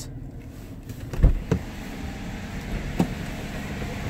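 The 2011 Dodge Challenger R/T's 5.7-litre Hemi V8 idling just after a cold start, heard from inside the cabin as a steady low hum. A sharp thump comes a little over a second in, a softer one just after, and a short click about three seconds in.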